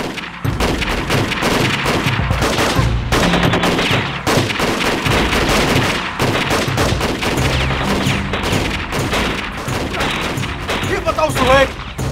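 Sustained gunfire from several rifles at once: rapid, overlapping shots and bursts of automatic fire.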